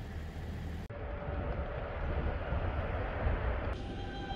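A steady low rumble with a hiss, like a vehicle running. Near the end it cuts to a quieter indoor hum with a few steady tones.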